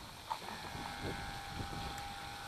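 Electric motor of a small remote-control boat running, a faint steady whine that starts about half a second in.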